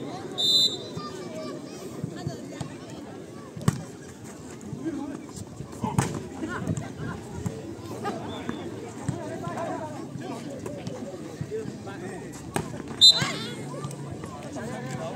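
Volleyball rally on a dirt court over steady crowd chatter, with a few sharp slaps of the ball being struck. Short high whistle blasts come about half a second in and again near the end.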